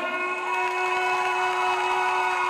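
Ring announcer's voice through the PA microphone, drawing out the winner's name in one long call held at a steady pitch.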